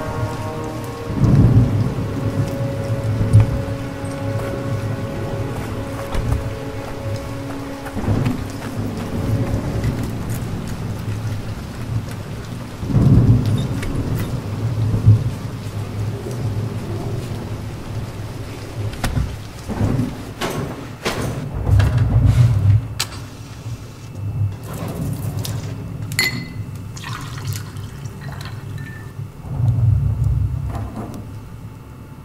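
Film soundtrack of a thunderstorm: steady rain with thunder rumbling several times, the rolls coming about a second in, near the middle, and near the end, over a low sustained music drone in the first part.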